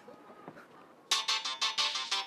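Quiet for about a second, then a bright, plinky electronic music cue starts suddenly with quick repeated staccato notes.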